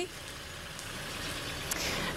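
Outdoor traffic noise: the even rush of a passing vehicle, growing slowly louder.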